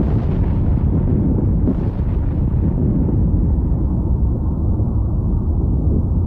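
An explosive charge detonated in an aircraft in a bomb test: a sudden loud blast, then a long low rumble that keeps going while the higher crackle dies away over the first couple of seconds.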